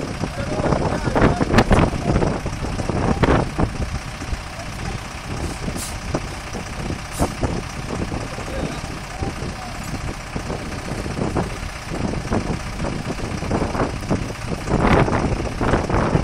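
A stuck minibus's engine running steadily, with people's voices over it about a second in and again near the end.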